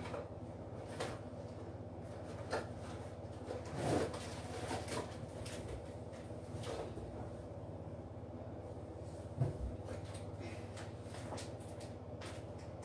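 Household objects being handled and rummaged through: scattered light knocks and clicks, with louder thumps about four seconds in and again near the ten-second mark.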